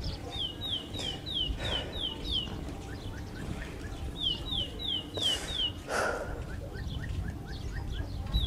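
A bird singing a phrase of about seven quick, high downslurred whistles, given twice about four seconds apart, with a few fainter lower chirps between. A steady low outdoor rumble runs underneath.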